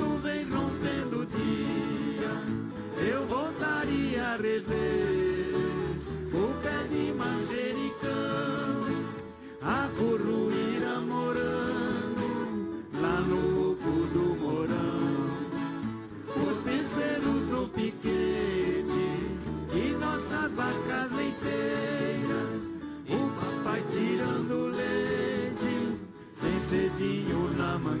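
A large orchestra of violas caipiras, Brazilian ten-string guitars, playing a caipira country song live, with voices singing along. The music comes in phrases of a few seconds with brief dips between them.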